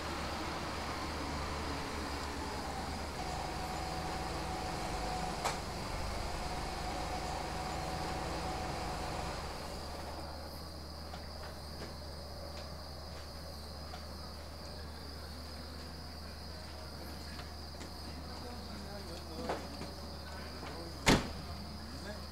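A car's engine running as it pulls in and parks, cutting out about ten seconds in, over a steady high chirping of crickets. A sharp click near the end as a car door opens.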